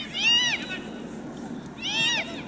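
Young footballers' high-pitched shouts on the pitch: two short calls, each rising and falling in pitch, one just after the start and one near the end.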